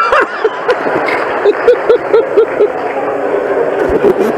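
Audience laughing, with one person's quick, rhythmic laughter standing out through the middle.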